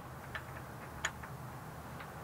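A few light clicks from a Phillips screwdriver and screw against a shade housing's end cap, the sharpest about a second in.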